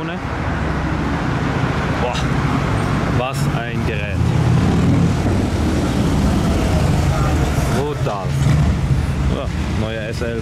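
Ferrari 812 Competizione's 6.5-litre V12 idling with a steady low rumble that swells a little about four seconds in, over city traffic.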